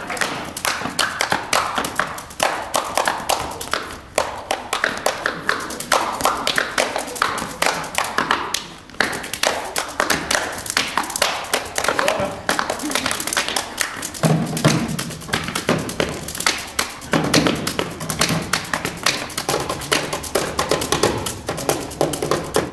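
Tap dancing and body percussion: fast, dense rhythmic taps and thumps on a stage floor. A low steady tone joins the rhythm about two-thirds of the way through.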